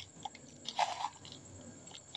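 A light click, then a few faint crunchy scrapes of dry powdered bait ingredients being tipped and shaken from one plastic bowl into another.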